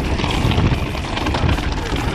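Rumbling wind and trail noise on the camera microphone of a trail bike riding down a rocky descent, with a hip-hop track playing underneath.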